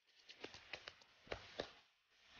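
Faint scattered clicks and taps, about seven in a second and a half, from hands moving close to the microphone.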